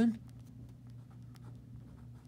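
Ballpoint pen writing on a sheet of paper: faint, irregular scratchy strokes, with a low steady hum underneath.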